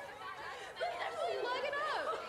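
A group of young women's voices shouting and jeering over one another, several at once, louder in the second half.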